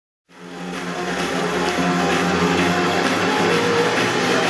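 Electronic dance music from a live DJ set played loud over a hall's sound system. It fades in just after the start and then holds steady, with sustained synth chords over a hiss-like wash.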